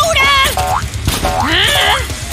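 Cartoon sound effects: springy, wobbling glides in pitch, several quick rising sweeps one after another, over background music.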